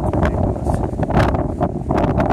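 Strong wind buffeting the camera microphone: a loud, continuous low rumble with irregular gusty crackles.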